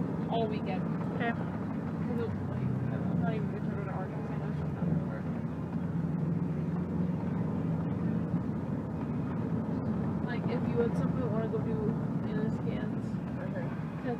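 Steady low rumble of a car's engine and tyres heard from inside the cabin while driving, with quiet talk at times, mostly near the start and again near the end.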